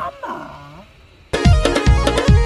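A man's drawn-out call of the name "Hamaaa", its pitch falling then rising. About two-thirds of the way in, loud music with a heavy bass-drum beat cuts in.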